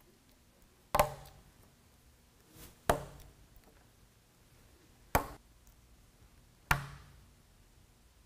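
Four sharp snaps, roughly two seconds apart, as Fia stick-a-stud snap fasteners are pressed into the bug screen's mesh edge against a wooden workbench.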